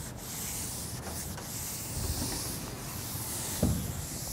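Chalk scratching across a blackboard in a run of writing strokes, with a short low knock near the end.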